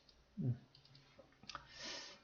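A few faint computer-mouse clicks. There is a short, low murmured vocal sound about half a second in and a soft hiss near the end.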